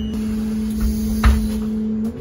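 Interior noise of a moving city bus or tram: a steady low hum from the drive with a low rumble underneath, and a single knock just past the middle.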